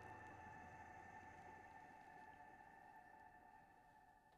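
A faint, sustained keyboard chord dies away slowly as the song ends.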